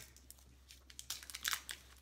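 Small plastic candy wrappers crinkling quietly as wrapped fruit chews are unwrapped by hand, in short scattered crackles.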